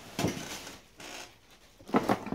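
Brief rustling and scraping handling noises as objects are moved about: one short burst just after the start and a louder cluster near the end.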